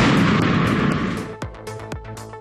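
A single loud blast, an explosion or heavy gunfire in war footage, that rumbles away over about a second and a half, heard over a background music bed.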